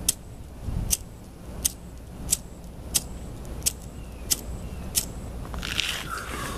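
A cheap lighter being struck over and over, eight sharp clicks about two thirds of a second apart, each failing to light, with a short hiss near the end; it is a "garbage lighter".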